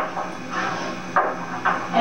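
Chalk writing on a blackboard: a light scratch, then a quick run of sharp taps and strokes from about a second in.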